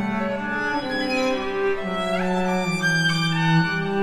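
String quartet with violins and cello playing held, overlapping bowed notes over a low cello line. A high part makes a quick upward slide a little past halfway.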